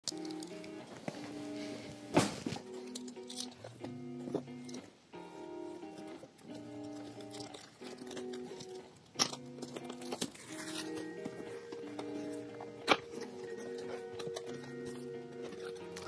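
Instrumental background music: a slow run of steady notes stepping from one pitch to the next. A few sharp clicks and crinkles come from a cardboard box and its packaging being handled, the loudest about two seconds in.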